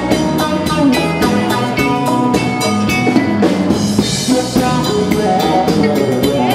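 Live jam-band rock instrumental: electric guitars, mandolin, bass guitar and a drum kit playing together over a steady drum beat, with no singing. A cymbal swells up about four seconds in.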